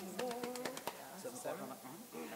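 Quiet brass warm-up: a soft held low note in the first half, with a quick run of clicks, over faint murmuring voices.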